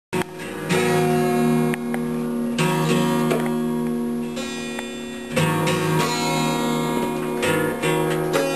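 A child strumming an acoustic guitar slowly: four strums roughly two to three seconds apart, each chord left to ring.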